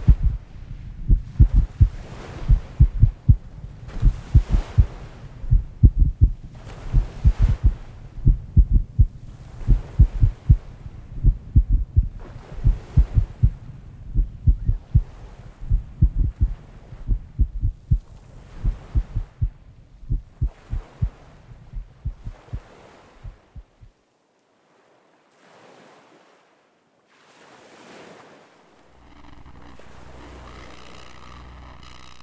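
A loud, regular heartbeat that slows and stops about 24 seconds in, over sea waves washing in every couple of seconds. After it stops, only a few faint wave swells remain.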